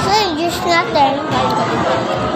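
A child's high-pitched voice talking and calling out in rising and falling swoops, over the steady chatter of a busy dining room.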